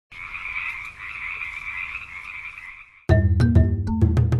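A dense chorus of frogs calling, a steady, rather high sound, cut off abruptly about three seconds in by loud music with sharp percussive hits and deep bass.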